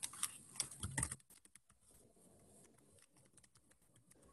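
Typing on a computer keyboard: a quick run of key clicks in the first second or so, then fainter, scattered clicks.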